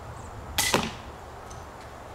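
A bolt from an 80 lb pistol crossbow strikes a foam archery target: one sudden sharp smack about half a second in, lasting about a quarter of a second.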